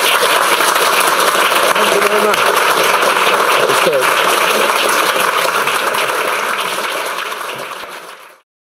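Audience applauding steadily, fading near the end.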